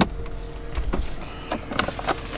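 A few light clicks and knocks of hands on car-interior trim, the last and sharpest as the centre console's sliding cover is pushed open, over a faint steady hum in the cabin.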